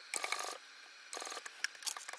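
Sewing machine stitching through layered bag fabric in two short bursts of rapid, even clicking, each under half a second, with a couple of single clicks after.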